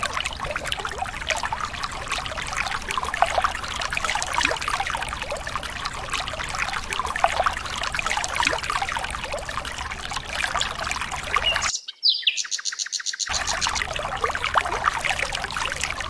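A thin stream of water pouring down and splashing into shallow water, a steady dense spatter. About twelve seconds in it cuts out for just over a second, with a brief high falling tone in the gap, then resumes.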